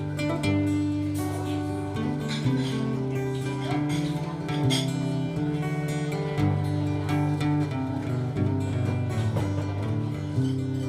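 Acoustic guitar played solo, chords picked and strummed with the notes ringing and changing every second or two.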